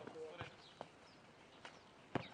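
A few faint, sharp knocks of a nohejbal football being kicked and bouncing on the clay court during a rally, three in under two seconds, just after a short shout.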